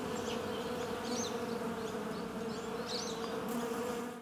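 Steady buzzing of bees, with short high chirps scattered through it.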